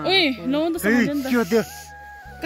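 A person's voice with a wavering pitch over background music, with a brief hiss about a second and a half in and steady held tones near the end.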